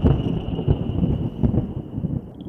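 A low, irregular rumble, like a thunder sound effect, with a faint steady high tone under it.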